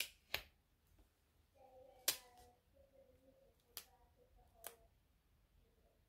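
Scattered sharp little clicks and taps, about five, the loudest about two seconds in, from tweezers and fingertips handling a small sticker on a paper planner page.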